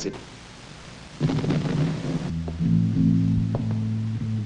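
Film soundtrack chopped into short fragments: the tail of a spoken word, a second of faint hiss, a louder low sound, then from about halfway a steady low chord of music with a few faint clicks.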